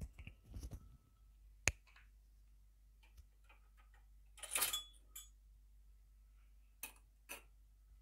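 Faint handling sounds: a sharp click a little under two seconds in, a short scraping rustle about halfway through, then a few more light clicks, like crockery or utensils being moved.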